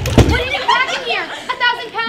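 A loud thud just after the start, then an actor's voice calling out in wordless vocal sounds that swoop up and down in pitch.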